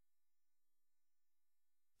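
Near silence: a faint steady electrical hum under the pause in the narration.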